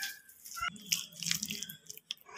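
A hand squishing and mixing raw prawns in a wet spice marinade in a bowl: irregular soft wet clicks and squelches, with one sharper knock under a second in.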